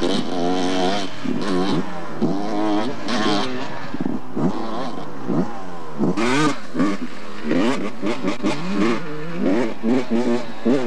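Dirt bike engines revving hard, their pitch climbing and dropping again and again as the bikes accelerate and back off along the track.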